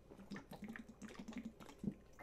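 A person drinking water close to the microphone: faint swallowing sounds and small mouth and lip clicks, with a short knock near the end.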